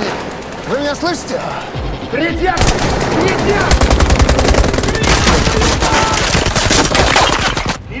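Strained gasps and short vocal sounds, then sustained rapid automatic gunfire from about two and a half seconds in, cutting off suddenly near the end.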